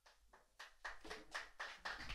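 Faint hand clapping, about four claps a second in a small room, growing louder after the first half second.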